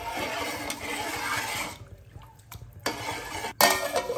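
A metal spoon stirring water in a large aluminium pot, with swishing water and the spoon scraping and clinking against the pot for about two seconds. A few light knocks follow, then a metal lid clanks onto the pot near the end.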